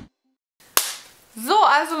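Dead silence, then a single sharp click a little under a second in that dies away quickly. A woman starts speaking about half a second later.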